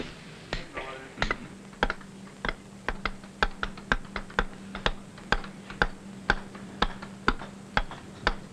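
Hand hammer striking a steel chisel cutting a groove into a sandstone block, in an even rhythm of about two sharp blows a second.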